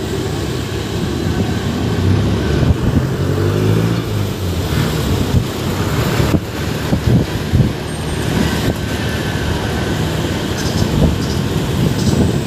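Motorcycle running on the road, heard from the rider's seat: a steady engine note under road and wind noise, a little stronger a few seconds in.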